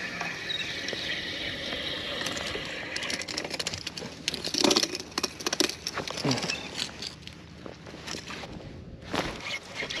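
Clicks, knocks and rattles of a small speckled trout being handled on a boat deck and thrown back, coming thickest in the middle, over a steady hiss at the start.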